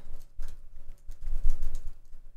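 Computer keyboard typing: irregular, dull keystrokes in short runs.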